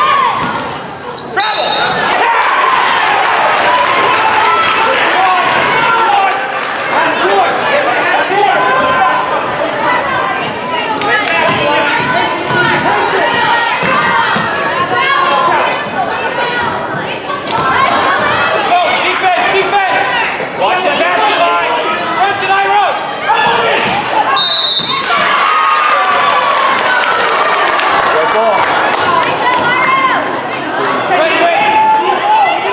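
Basketball being played in a gym hall: a ball bouncing on the hardwood floor and steady shouting and chatter from players, coaches and spectators. Two short high referee's whistle blasts, one about a second in and one near 25 seconds.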